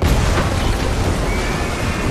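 Explosion sound effect: a sudden loud blast right at the start, then a rumbling wash of noise as a wall bursts apart and stone debris flies, with music underneath.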